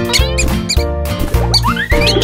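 Upbeat cartoon background music with a steady beat, overlaid with quick squeaky chirps in the first second and a long rising whistle-like glide near the end.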